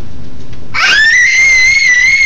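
A young girl's high-pitched scream, one long held note starting about a second in.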